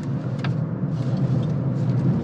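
Cabin noise of a Honda ZR-V hybrid driving through a bend: a steady low drone of drivetrain and tyres on the road, with a brief click about half a second in.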